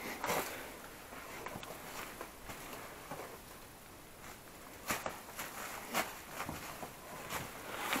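Footsteps and scuffing on rock and loose stone, with a few short sharp knocks spread through, the clearest about five, six and seven seconds in.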